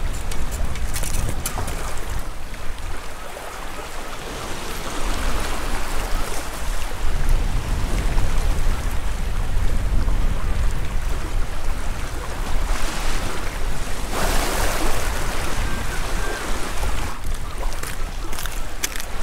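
Wind buffeting the microphone over the steady wash of sea waves on rocks.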